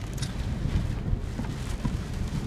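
Inside a moving truck's cab during a thunderstorm: steady low road and wind noise, with a few faint ticks.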